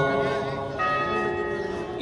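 A pause between phrases of a man's chanted Arabic supplication over loudspeakers, filled by steady ringing tones that slowly fade. A fresh set of ringing tones comes in just under a second in, before the chanting resumes at the end.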